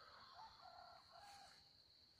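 Near silence with faint distant bird calls, a few short pitched calls from about half a second to a second and a half in, over a steady thin high-pitched tone.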